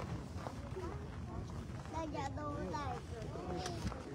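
Indistinct voices of people talking near the microphone, clearest about halfway through, over a steady low rumble.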